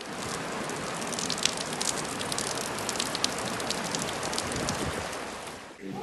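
Torrential rain falling in a steady hiss, with many small ticks of drops, fading away near the end.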